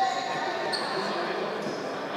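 A basketball bouncing on the wooden court of a large, echoing sports hall, with short high squeaks of sneakers on the floor and players' voices.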